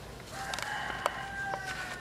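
A rooster crowing once: a single long call held for about a second and a half, falling slightly in pitch at the end.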